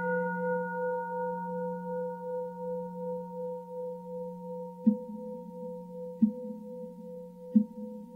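A struck singing bowl ringing with several steady overtones that slowly fade. From about five seconds in, three soft, low knocks sound evenly, about a second and a third apart.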